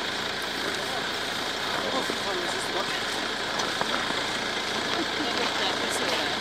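Indistinct talk among a few people over a steady hiss.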